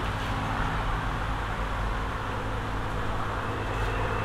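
Steady background hum and hiss with low droning tones, unchanging throughout: the kind of constant noise from a running machine or distant traffic.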